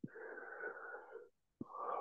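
A person's long, breathy exhale, like a drawn-out sigh, lasting about a second.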